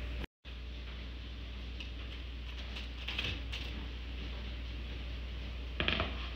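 A steady low hum of room or appliance noise, with a few faint soft taps about three seconds in and again near the end.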